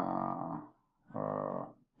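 A man's voice holding a long, level hesitation sound "ehh" twice, with a short silence between.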